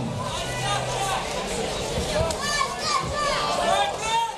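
Boxing-arena crowd: many voices talking and shouting at once, with no single voice standing out.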